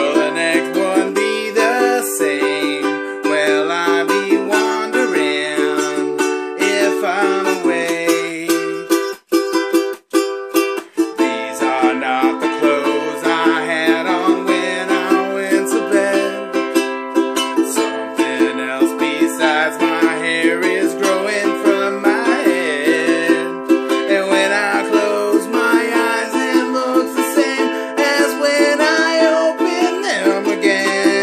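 Ukulele strummed in a steady rhythm of chords, an instrumental passage without singing. The strumming stops briefly twice, about nine and ten seconds in, then carries on.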